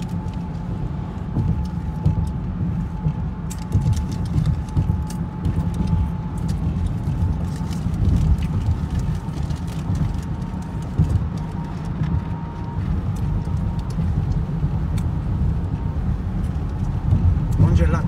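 Road and engine noise inside a car's cabin at highway speed: a steady low rumble, with a faint steady high tone that fades out near the end and scattered light clicks.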